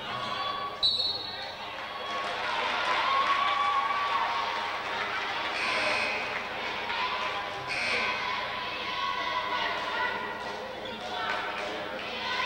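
Basketball game in a gym: crowd voices echoing in the hall and a basketball bouncing on the wooden floor. A short shrill high tone comes with a sudden loud onset about a second in, and two briefer ones follow around six and eight seconds in.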